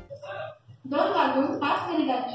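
Railway station public-address announcement in Hindi in a woman's voice, starting about a second in, calling a local train to platform one.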